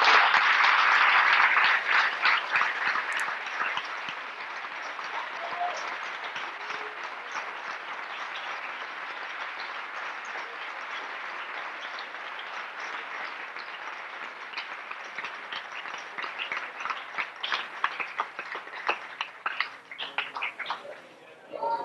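Theatre audience applauding at the end of a performance, loudest in the first few seconds, then settling into lower, steadier clapping with a few louder claps near the end.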